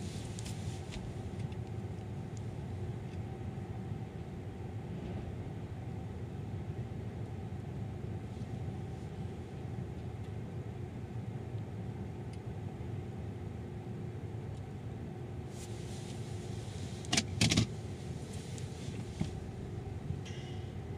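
Car engine idling, heard from inside the cabin as a steady low rumble with a faint hum. Two short sharp clicks stand out near the end.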